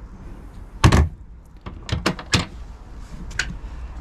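A fibreglass hatch lid on a boat shut with one loud thump about a second in, followed by a few lighter knocks and taps.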